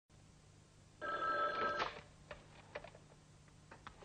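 Desk telephone bell ringing in one short burst about a second in, followed by a few light clicks and knocks as the handset is picked up to answer.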